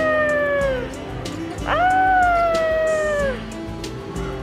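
Two long, drawn-out high-pitched vocal exclamations like "waaah", each held for more than a second with the pitch sliding down at the end, over background music with a steady beat.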